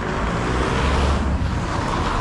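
Road traffic noise: a steady rush of passing cars with a low rumble that swells about halfway through.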